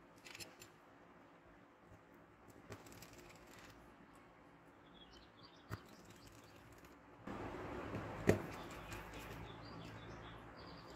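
Faint small clicks and taps of a precision screwdriver and fingers on a smartwatch's metal back cover as its screws are driven in, with the loudest click a little after eight seconds in. A steady hiss comes in about seven seconds in.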